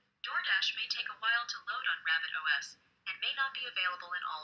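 The Rabbit R1's synthesized assistant voice speaking through its small built-in speaker, with a thin, telephone-like sound. It says in two phrases that DoorDash may take a while to load on the Rabbit OS and may not be available in all regions.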